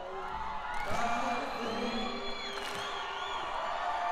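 Live concert audience cheering, whooping and whistling as an acoustic song finishes, with the last guitar notes still ringing under it. The cheering swells about a second in.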